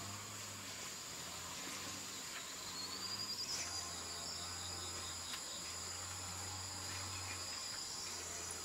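Insects chirring steadily at a high pitch. About two seconds in, one winds up in a rising buzz, and from about three and a half seconds a second, higher tone joins.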